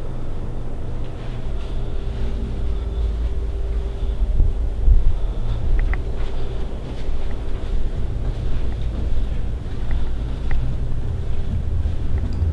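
Low, uneven rumble of a handheld camera being carried while walking, with a faint steady hum underneath and a couple of small clicks.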